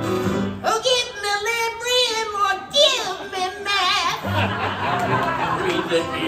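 A man singing in a high, squeaky voice just after breathing in from a helium balloon, the pitch wavering up and down, from about a second in to about four seconds. An acoustic guitar plays before and after this stretch and falls out while the helium voice sings.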